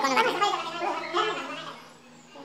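A man's voice, indistinct, muttering or speaking words that cannot be made out, fading away toward the end.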